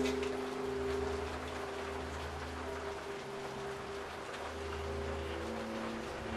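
A low, sustained musical drone of held notes that shift every second or two, over a steady rain-like hiss.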